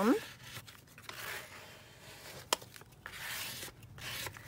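Hands pressing and rubbing down a glued paper envelope, soft rustling and scuffing of paper, with a single sharp click about halfway through.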